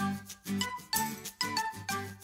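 Instrumental children's music: a steady beat of struck, ringing notes over a bass line, about two notes a second.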